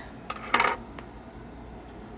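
A metal Sorelli rhinestone cuff bangle set down on a hard tabletop: a light tap, then a short clink and rattle about half a second in, and a faint tick a second in.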